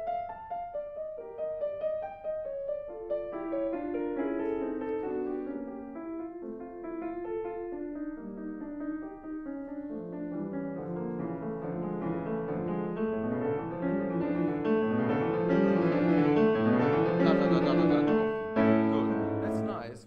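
Grand piano played solo: a passage that grows steadily louder and fuller through a long crescendo to a fortissimo climax about three-quarters of the way through, then a few repeated chords before the playing breaks off at the end.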